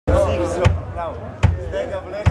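Live band music: a woman singing over hard drum hits that land about every 0.8 seconds, twice in this short stretch.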